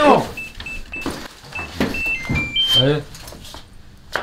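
Electronic digital door lock keypad beeping as code keys are pressed: about eight short beeps, the first several at one pitch, the last few stepping to different pitches.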